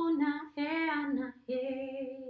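A woman singing wordless light-language syllables alone, unaccompanied, in three held phrases with short gaps between them.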